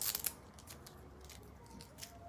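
A quick burst of small clicks and rustles in the first half-second: the clip of a lavalier microphone being handled and fastened onto fabric.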